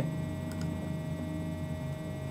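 Steady low electrical hum with a faint single click about half a second in.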